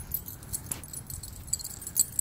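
Faint scattered metallic jingling over a low, uneven rumble of wind and handling on the microphone.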